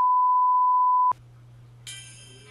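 Television colour-bar test tone: one steady, high, pure beep lasting about a second that cuts off suddenly. A low hum follows, and music with jingling bells starts near the end.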